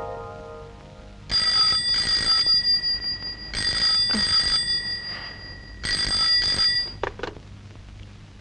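Bell of a rotary desk telephone ringing three times, each ring a quick double ring, followed by two short clicks as the handset is lifted.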